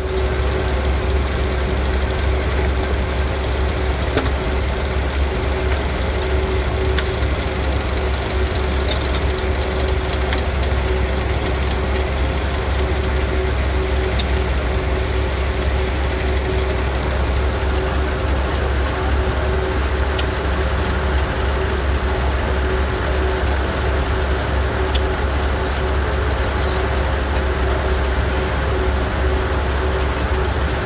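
Frick sawmill's large circular saw blade spinning free between cuts, with its belt-driven mill machinery running: a steady hum with a held tone, with no cut in progress.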